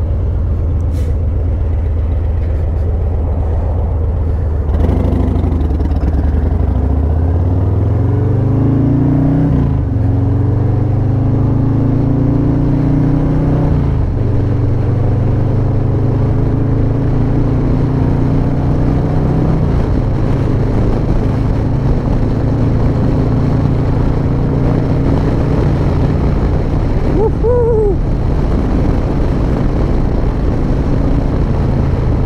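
Harley-Davidson Low Rider ST's Milwaukee-Eight 117 V-twin idling, then pulling away about five seconds in and accelerating through the gears. The pitch climbs and drops back at each of three upshifts, then settles into a steady cruise.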